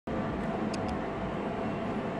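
Steady room noise with a low hum, and a few faint ticks in the first second.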